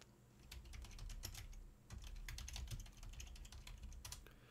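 Fast typing on a computer keyboard: faint, rapid key clicks in three quick runs, starting about half a second in.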